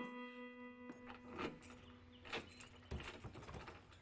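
A plucked-string music cue fades out in the first second. Then come a few faint, irregular knocks and clicks against a quiet room background.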